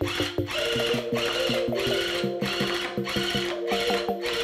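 An electric tufting gun running steadily as it punches yarn into the backing cloth, under background music with an even plucked beat.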